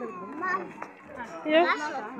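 Voices of a group talking and calling out in short bursts, with one light knock a little before the middle.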